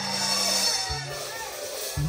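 Live conjunto band's amplified instruments letting a held low note ring, which stops about a third of the way in, then a short low note near the middle, with faint voices in the room.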